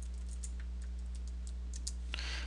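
Computer keyboard keystrokes: about nine light, irregular taps as a short line of code is typed and corrected, over a steady low electrical hum.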